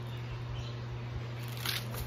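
Steady low hum of a window air conditioner running, with a brief hiss about three-quarters of the way through.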